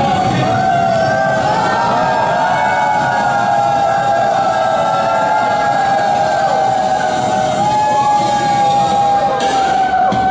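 Instrumental backing-track music playing through a busker's speaker: long, held melody notes moving slowly, with no vocal over them.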